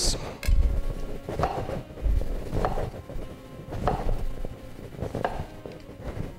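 A chef's knife slicing through an orange onto a wooden chopping block: several short knocks of the blade on the board, the loudest about half a second and two seconds in. Faint background music runs underneath.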